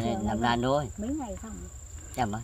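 Insects calling: one unbroken high-pitched tone. A voice talks over it for about the first second.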